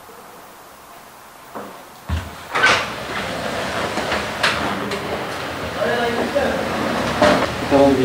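Quiet room tone, then about two seconds in a sharp knock followed by ongoing indoor clatter, a few clicks and murmuring voices.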